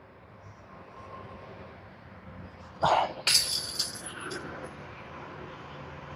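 A disc golf putt striking a metal chain basket about three seconds in: a sudden rattle and clang with metallic ringing that dies away within about half a second, just after a brief duller sound.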